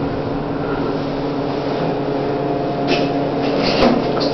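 Otis hydraulic elevator running: the steady hum of its pump motor as the car rises, then a short rush and click near the end as the doors open.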